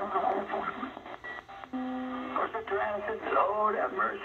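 Shortwave broadcast audio from a portable DSP SDR receiver (a Chinese Malahit clone) being tuned up the 49-meter band toward WWCR on 5935 kHz: a station's voice comes through thin, with the treble cut off. About halfway through a steady tone sounds for about half a second. The receiver is being overloaded by WWCR's strong signal even with the RF gain at zero.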